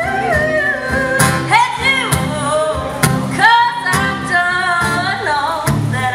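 A woman singing live in a swamp-pop/blues style, her voice sliding and bending through ornamented phrases, over her own strummed acoustic guitar.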